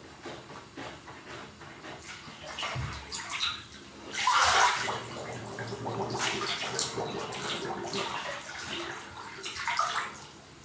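Bathwater sloshing and splashing as a clothed body shifts about in a full bathtub, with the loudest splash about four seconds in.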